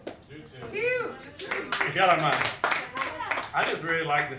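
Audience applauding, with a few voices calling out over the clapping.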